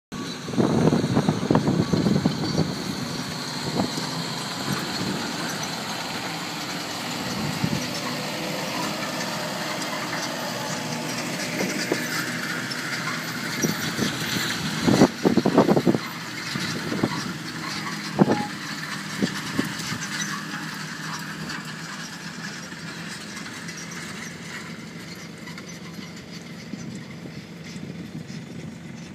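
Fendt 828 Vario tractor's diesel engine working under load while pulling a five-furrow Kverneland reversible plough through the ground. It is louder in spells early on and about halfway through, with a few sharp knocks, and fades gradually as it draws away.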